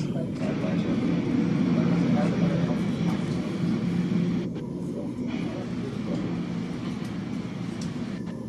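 Low steady rumble of a Boeing 777's jet engines at taxi power, a little louder in the first half and easing slightly about halfway through, mixed with a murmur of background voices.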